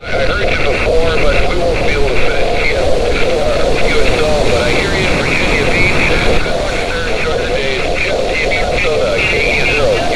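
A distant station's single-sideband voice coming through the speaker of a Xiegu G90 HF transceiver on 17 meters. It is thin and garbled, heard over steady band noise.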